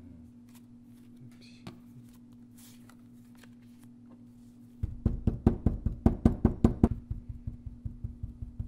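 A stone seal dabbed repeatedly into a porcelain dish of red seal paste. A quick run of knocks, about six a second, starts about five seconds in and softens near the end.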